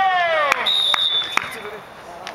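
A man's loud shout that falls in pitch, followed by a referee's whistle blown as one steady high note for under a second, with a few sharp knocks.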